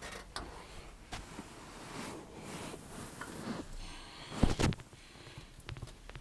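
Handling noise inside a van's cabin: soft rustles and light knocks, with a louder double knock about four and a half seconds in.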